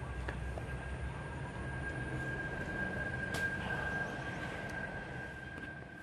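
A steady high-pitched tone, strongest around the middle, over low rumbling handling noise and a few light snaps as the camera is carried through undergrowth.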